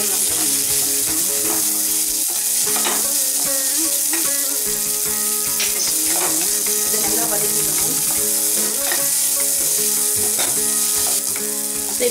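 Chopped vegetables sizzling in hot oil in a metal pressure cooker, with a steady hiss, while a wooden spatula stirs them and scrapes and knocks against the pan every second or two.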